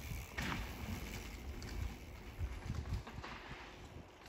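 Mountain bike rolling over a dirt jump trail, its tyres on packed dirt with a few knocks from landings, fading as it moves away, with wind rumbling on the microphone.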